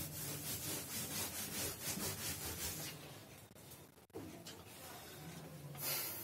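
Blackboard eraser rubbed back and forth across a chalkboard in quick repeated strokes, wiping it clean; the rubbing dies away about three seconds in.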